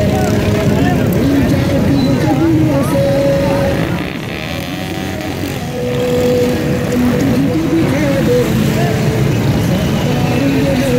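Busy street traffic: motorcycles and cars passing in a steady stream, with crowd voices and shouting over it and several long held tones. The noise drops slightly for about two seconds near the middle.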